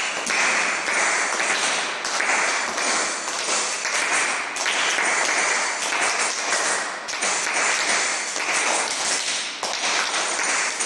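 Hands clapping, a dense patter that swells and eases in repeated surges.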